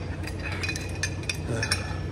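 Gym room ambience: a steady low hum with a scattering of light clicks and clinks, and a short "uh" from a man near the end.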